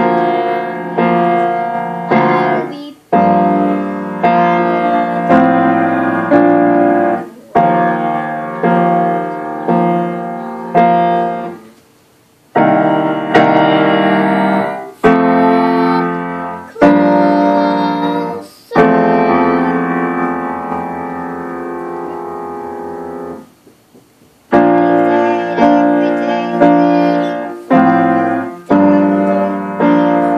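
Grand piano played by a young child: a series of slow struck chords that ring into each other under heavy sustain pedal. There is a brief pause about twelve seconds in, and a chord is held for several seconds before a second pause near the end.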